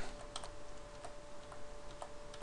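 A few faint, scattered computer keyboard clicks while code is being edited, over a faint steady hum.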